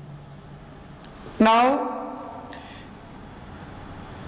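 Felt-tip marker writing on a whiteboard: two short strokes, one near the start and one a little past halfway, around a man's drawn-out spoken "Now".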